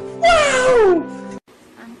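A meme sound clip: a man's loud, drawn-out exclamation 'Wow!' whose pitch slides steadily downward, over a short held music chord that cuts off abruptly just after it.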